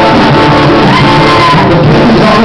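Live acoustic guitar strummed steadily while a man sings into a microphone, in a hall.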